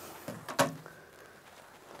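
Faint rubbing of a cloth towel drying water off a vinyl-lettered magnet sheet, with one sharp tap about half a second in.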